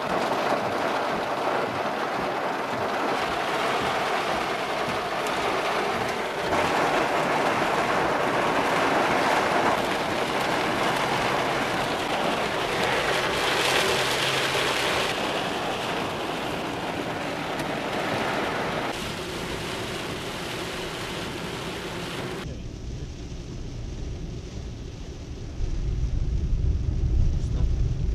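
Heavy thunderstorm downpour: a dense, steady hiss of rain, broken by several abrupt changes in level between clips. In the last few seconds the hiss gives way to a deep, louder rumble.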